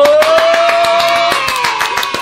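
Children cheering with one long rising shout while clapping their hands rapidly.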